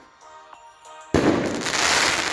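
An aerial firework shell bursts about a second in with a sudden bang, followed by a dense crackle as its stars burn.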